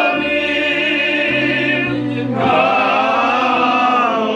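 Several men singing together in cantorial style, their voices wavering with a wide vibrato, with a short downward slide in pitch a little past halfway.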